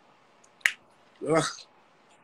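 A single sharp click about two-thirds of a second in, followed half a second later by a short vocal sound from a person.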